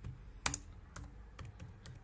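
Typing on a computer keyboard: a handful of separate key clicks, the loudest about half a second in.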